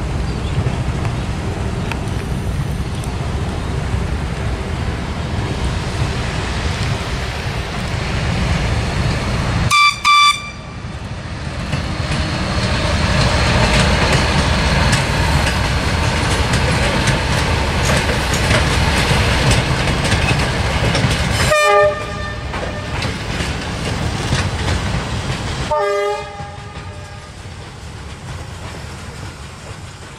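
Locomotive-hauled track-laying work train rumbling steadily along the rails, with three short horn toots about ten seconds in, about twenty-two seconds in and about twenty-six seconds in.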